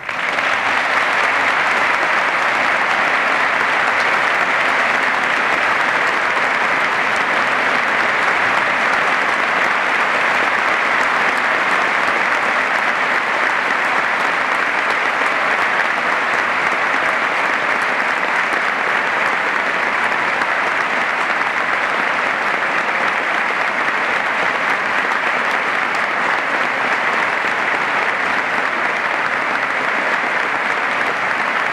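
Sustained applause from a large audience giving a standing ovation. It breaks out suddenly and holds at a steady, loud level.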